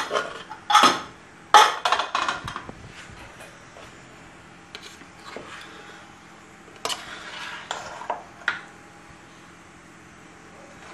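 Metal clanks of a pressure cooker lid being lifted off and set down, loudest about a second and a half in. Then a ladle scrapes through cooked rice in the metal pot, with a few knocks against the pot near the end.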